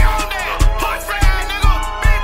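Bass-boosted hip-hop beat with deep bass hits about every half second under a melodic line that bends in pitch.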